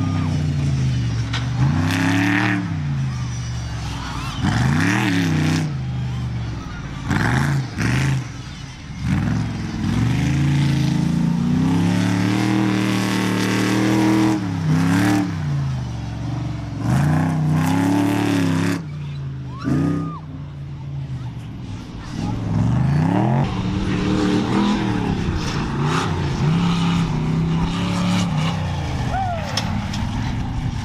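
Off-road prerunner trucks' engines revving hard along a dirt course, the pitch climbing and dropping back over and over, every two to three seconds.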